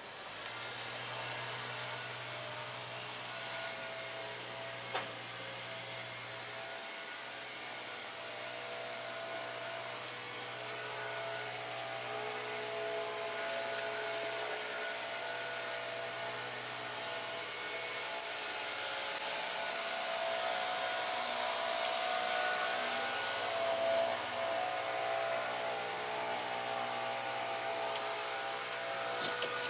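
A steady mechanical hum over an even hiss, with faint pitched tones that come and go and a few light clicks.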